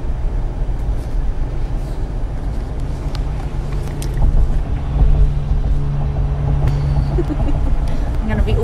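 A car's engine and tyres heard from inside the cabin while driving: a steady low rumble, with the engine hum growing stronger from about three seconds in, and a few small clicks.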